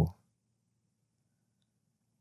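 Near silence with a faint low hum, just after a narrator's voice ends at the very start.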